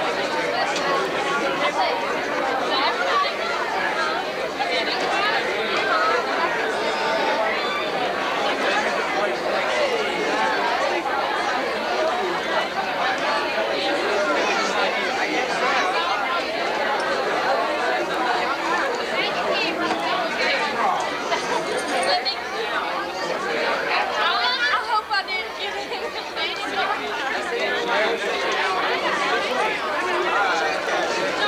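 Many people chatting at once: overlapping voices with no single speaker standing out, continuous throughout.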